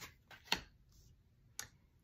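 A tarot card being drawn and laid down on a wooden tabletop: a few light, sharp clicks of card and fingers on the table, the loudest about half a second in.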